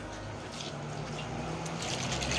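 Water dripping and splashing in a stainless steel basin as a soapy cloth face mask is squeezed out and dipped back in to rinse it.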